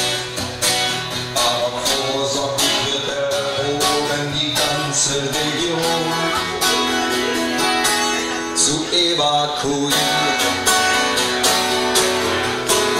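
Acoustic guitar strummed live in a steady rhythm.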